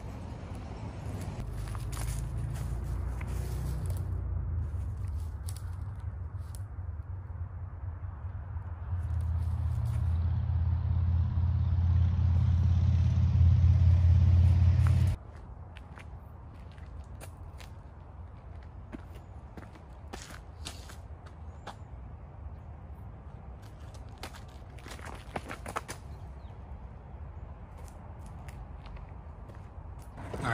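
A low, steady mechanical rumble, like an engine running, swells over the first half and is cut off suddenly about halfway through. After that comes a quieter outdoor background with a few light crackles and clicks.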